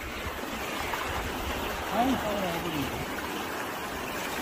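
Shallow seawater swishing steadily around a wader's legs, with a brief voice sound about two seconds in.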